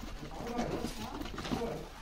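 Sand, cement and gravel mix sliding out of a metal pan and pouring onto a heap, a gritty rush, with a bird cooing in the background.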